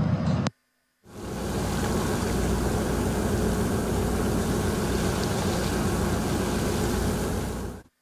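A vessel underway at sea: a steady rush of churning water along the hull over a low engine rumble. It fades in about a second in and stops just before the end.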